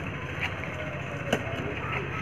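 Badminton racquets striking a shuttlecock in a rally: sharp clicks just over a second apart, over a steady low hum.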